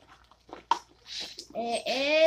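Paper and cardboard packaging being handled and rustled, with one sharp click a little under a second in.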